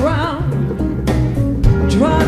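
Live jazz band music: a double bass plays low notes under sharp percussion strokes, with a brief wavering melodic line near the start.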